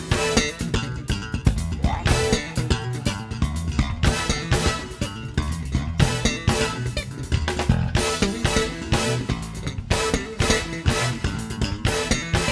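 Live funk band playing an up-tempo groove: electric bass and drum kit to the fore, with keyboards.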